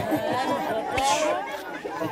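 Children's voices chattering and calling out over one another, with one sharp slap about a second in.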